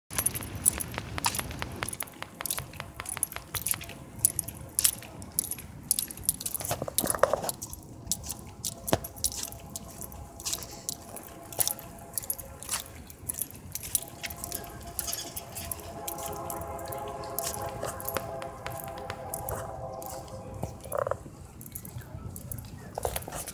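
Distant BNSF freight locomotive horn sounding a steady chord, faint at first and held through the second half, stopping shortly before the end. Over it, frequent sharp clicks and jingling from the phone being carried while walking.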